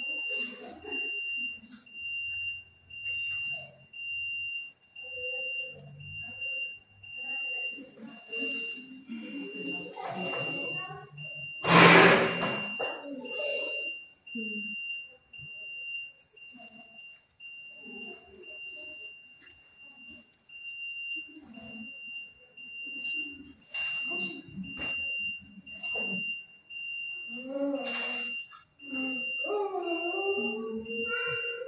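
A labouring woman's short groans and straining sounds during delivery, with one loud outburst about twelve seconds in. A steady high-pitched electronic tone sounds throughout.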